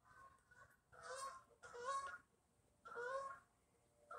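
A flock of geese honking as they fly over: a faint honk near the start, then three honks about a second apart.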